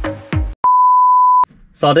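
A single loud, steady electronic beep tone, one pure pitch held for just under a second, cutting in and out sharply. It follows the end of upbeat electronic music with drum hits, and a man starts talking near the end.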